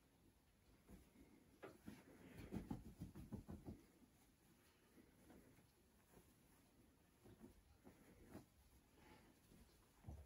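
Faint rustling and handling of a large fabric fitted sheet as it is gathered and folded, with soft irregular swishes that are busiest about two to four seconds in.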